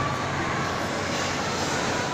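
Steady background din of a busy shopping mall: an even rushing hum with faint distant voices mixed in.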